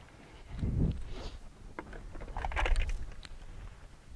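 Wind buffeting the microphone in two low, uneven rumbling gusts, with a few faint footsteps on pavement.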